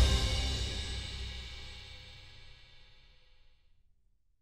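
An orchestra's final chord ringing out and dying away into the hall's reverberation, fading to silence over about three and a half seconds: the end of the piece.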